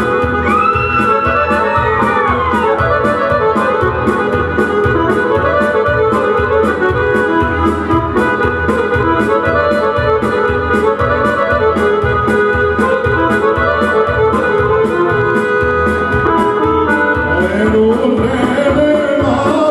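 Instrumental break of a live folk song played on a Korg electronic keyboard: an organ-like melody over a steady programmed beat of about three strokes a second, with the lead notes bending in pitch in the first couple of seconds.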